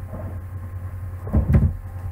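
Computer keyboard keys struck, heard as a short cluster of dull thumps about one and a half seconds in, over a steady low hum.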